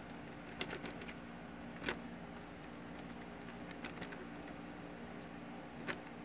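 Faint steady hum with a few light clicks and taps as an HO-scale plastic model tank car is handled and set down on the rails.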